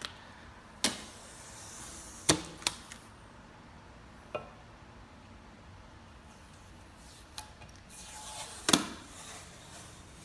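Hands handling the glass panels of a glass display case: about six sharp clicks and knocks spread through, the loudest near the end, with brief scratchy handling noise around two seconds in and again near the end.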